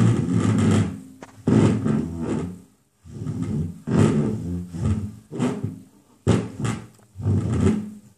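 Plastic step stool being pushed and dragged across a wooden cabinet top: a run of irregular scrapes and knocks, some with a low rubbing tone as the plastic feet slide over the wood.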